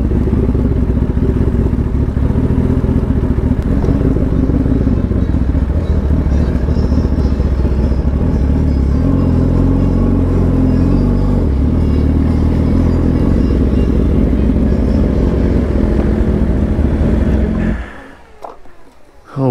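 Sport motorcycle engine running as the bike is ridden at low speed over a sandy dirt track, its note shifting with the throttle. The sound drops away abruptly just before the end.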